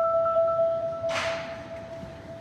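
Vibraphone played with four mallets: a rapidly repeated note doubled in octaves stops being struck and is left ringing, fading away. A brief hiss-like noise comes about a second in.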